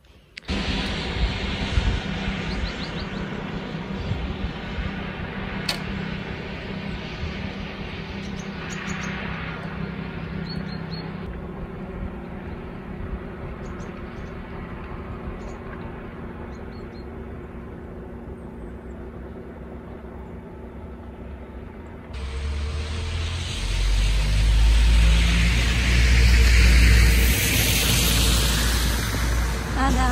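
A vehicle engine running steadily with a low hum for most of the clip, from a tractor plowing snow. About 22 seconds in it cuts to a much louder, deep rumble from a car engine running close by, the loudest sound in the clip.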